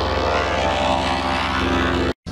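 A steady, buzzing synthetic drone: many held tones over a rough, pulsing low hum, the soundtrack of a logo sequence distorted by audio effects.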